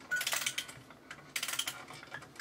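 Two short bursts of rapid clicking and rattling, about a second apart, with brief thin high tones among the clicks.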